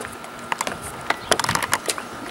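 A run of irregular sharp clicks and taps, about a dozen, most of them from about half a second in.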